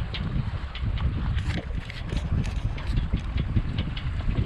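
Wind buffeting the microphone aboard a sailboat under sail, a gusty low rumble, with brief splashes of water along the hull.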